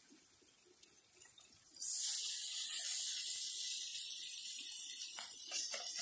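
Frying bacon and fat sizzling loudly in a steel mess tin over a gas-canister stove, starting suddenly about two seconds in as food goes into the hot fat, with a few light knocks against the tin near the end.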